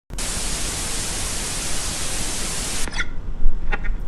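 Static-noise sound effect: a loud, even hiss that cuts off suddenly about three seconds in. A few faint clicks and a low thump follow, over a low rumble.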